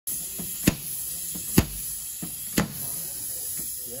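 Suction-cup slide-hammer dent puller on a car fender, its sliding weight slammed against the end stop three times about a second apart, each a sharp knock, with fainter knocks between the blows.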